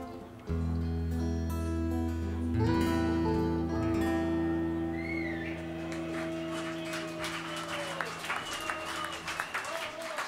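A band's final chord ending a song: electro-acoustic guitar and bass guitar holding one chord that rings on and dies away near the end. Audience applause and whistles build up over the last few seconds.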